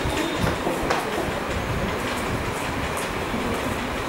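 Steady low rumbling noise with a couple of faint clicks about half a second and a second in.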